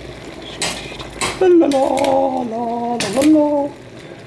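A spoon knocking and scraping against a stainless steel pot while stirring onions, with three sharp knocks. Through the middle, a loud, held humming voice that steps down in pitch a couple of times.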